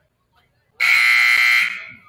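Gymnasium scoreboard buzzer sounding one steady, buzzing blast of about a second, then dying away in the hall.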